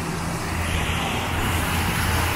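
Steady rush of water cascading down a wall fountain, over a low rumble of city traffic.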